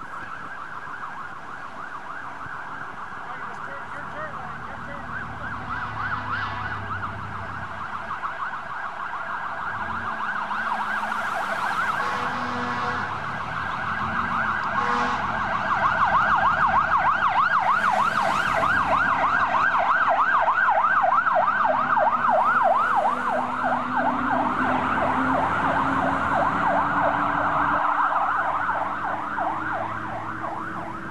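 Emergency vehicle siren in a fast yelp, its pitch sweeping up and down several times a second. It grows louder as it approaches, is loudest through the second half, and drops off near the end.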